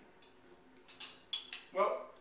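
A spoon clinking against a bowl of oatmeal, three short, sharp clinks about a second in.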